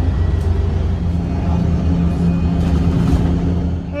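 Bus engine and road rumble heard from inside the cabin of a moving single-deck bus: a loud, steady low rumble, with a steady low hum joining about a second in.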